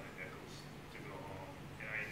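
Faint, distant speech from someone off the microphone, over a steady low room hum.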